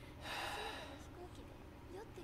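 A person's short, sharp breath, a gasp or hard exhale lasting under a second, near the start, over faint speech.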